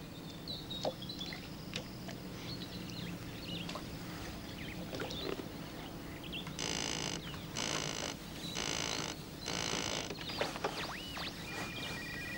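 Telephone bell ringing four times, about once a second, after a stretch of faint clicks and rustles.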